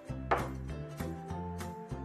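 A single short knock about a third of a second in, as a small sesame oil bottle is set down on a countertop, over steady background music.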